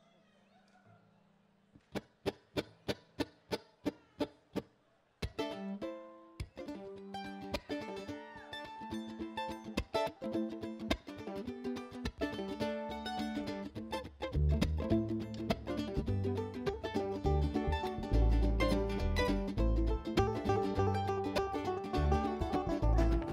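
A string band playing live. After a brief near-silence and a quick run of about a dozen even ticks, plucked strings (banjo, guitar, mandolin-like picking) start about five seconds in. Upright bass and drums join around the middle and the music grows louder.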